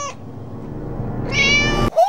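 A cat meowing: one meow trails off right at the start, and a second, drawn-out meow builds up near the end and cuts off abruptly.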